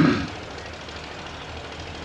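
The tail of a spoken word, then steady background hum and hiss through a pause in the speech.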